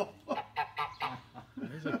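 Domestic grey goose calling in a run of short, quick honks, with a couple of longer calls near the end. The calling is conversational, which the owners take for the goose just talking to them rather than being upset.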